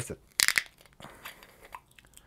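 The foil seal on a Jameson Triple Triple whiskey bottle's cap breaking as the cap is twisted open: a sharp crackle about half a second in, then a few fainter clicks.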